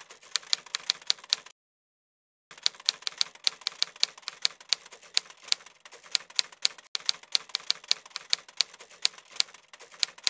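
Typewriter typing sound effect: rapid key clicks, several a second, that pause for about a second shortly after the start and then run on steadily, keeping time with text being typed onto the screen.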